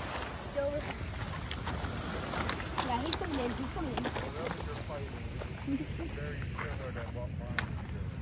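Steady low rumble of wind and water on a rocky shoreline, with faint, indistinct voices and scattered sharp clicks.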